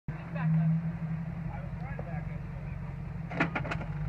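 2002 Jeep Grand Cherokee WJ engine running steadily at crawling speed on a rocky climb, with three quick sharp knocks about three and a half seconds in.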